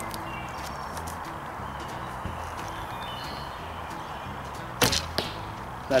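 A bow is shot about five seconds in: one sharp, loud snap of the string on release, followed about half a second later by a fainter knock.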